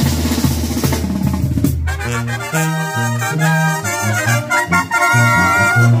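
Live Mexican banda music: sousaphone bass line under trumpets and trombones, with drums. About two seconds in the drumming thins out and the horns play held notes over the stepping tuba line.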